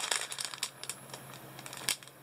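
Clear plastic bag of bagged diamond-painting drills crinkling as it is handled, with scattered small crackles that are busiest at the start.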